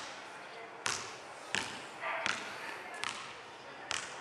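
A series of sharp knocks, five in all, at about one every three-quarters of a second, each with a short ringing tail.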